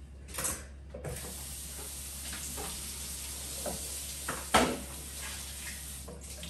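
Kitchen faucet turned on about a second in, water running steadily into the sink as a wooden cutting board is rinsed. A sharp knock about four and a half seconds in is the loudest sound, with a lighter one just before the water starts.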